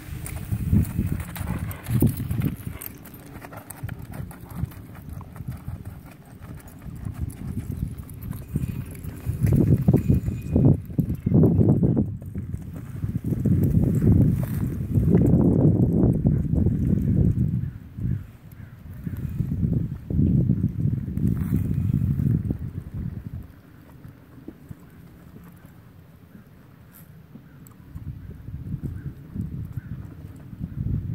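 A horse's hoofbeats on soft arena dirt as it moves from a walk into a lope. The thudding swells and fades as the horse circles, loudest through the middle and dying down for a few seconds shortly before the end.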